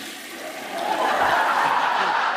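Toilet flush sound effect, rushing water, with studio audience laughter swelling about a second in.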